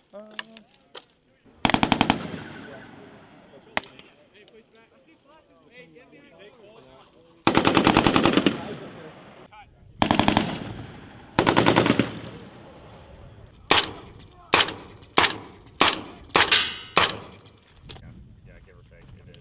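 Automatic gunfire laying down suppressing fire: a short burst about two seconds in, a longer burst around eight seconds, two more bursts soon after, then a quick string of single shots near the end, each trailing off in echo.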